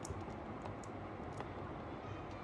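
Irregular light clicks and taps, about five or six in two seconds, from small items and plastic packaging being handled on a table, over a steady low background noise.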